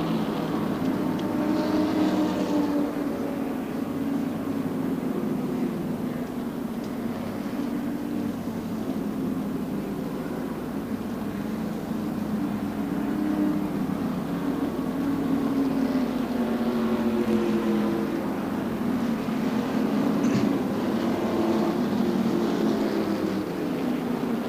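A steady drone of stock-car V8 engines running at reduced speed under caution, their pitch slowly rising and falling as cars pass and recede.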